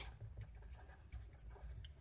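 Faint, short strokes of a felt-tip marker writing a word on paper.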